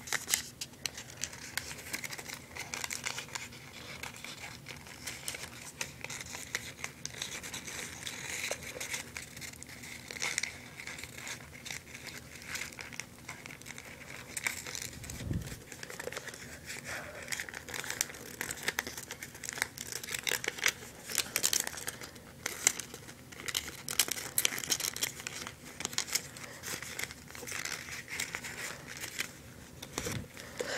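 Folded origami paper units rustling and crinkling in the hands as their pointed tips are slid under the flaps of neighbouring units, in irregular bursts. About halfway through there is a single low bump.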